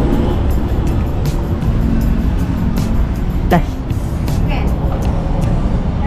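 Road traffic beside a busy street, a steady low rumble, with music underneath. A short voice sound comes about three and a half seconds in.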